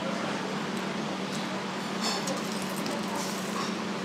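Steady background noise with a low steady hum and no talk, broken by a few faint ticks about two seconds in.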